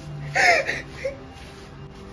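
A woman crying: a loud sobbing outburst about half a second in and a short whimper about a second in, over quiet background music.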